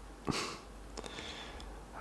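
A short, sharp breath drawn in through the nose close to the microphone, about a third of a second in, followed by a faint mouth click about a second in.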